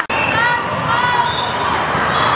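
Indoor volleyball match sound in a large echoing gym: voices of players and spectators, with short high squeaks, typical of shoes on the court. The sound drops out briefly at the very start.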